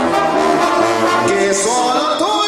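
A Sinaloan brass band (banda sinaloense) playing live: a tuba bass line under trombones, clarinets and trumpets in an instrumental brass passage.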